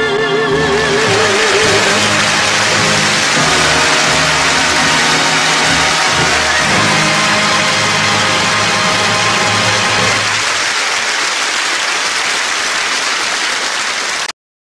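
Audience applauding as the singer's last held note, sung with vibrato, ends about two seconds in over the orchestra's sustained closing chord; the chord stops about ten seconds in and the applause thins near the end.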